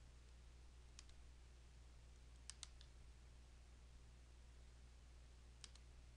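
Faint computer mouse clicks in near silence: a single click about a second in, a quick double click about midway, and another double click near the end.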